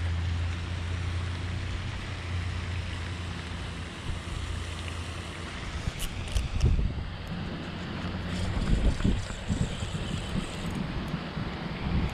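Wind rumbling on the microphone, with scattered clicks and knocks from rod and reel handling while a hooked fish is played. The low rumble is heaviest in the first few seconds, and the clicks start about halfway through.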